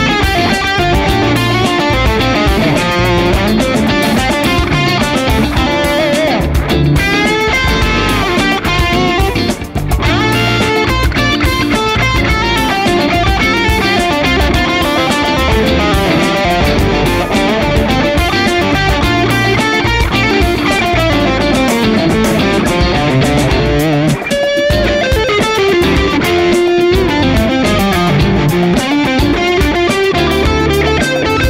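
A 2022 Gibson Les Paul Standard '60s electric guitar played through an amp on its neck pickup, a Burstbucker 61R humbucker: a continuous run of lead lines and chords with several string bends.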